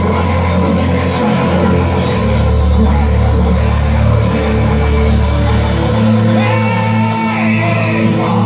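Live gospel praise band playing loud through a hall's PA: keyboard, drums and microphones carrying the singers' voices. The sustained bass note shifts about two seconds in and again near six seconds.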